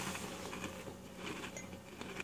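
Quiet room tone: a faint steady hum under light rustling.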